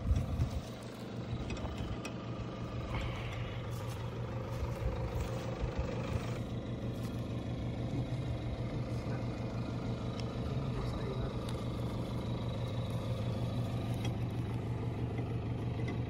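A vehicle running steadily while driving, with an even, low engine drone.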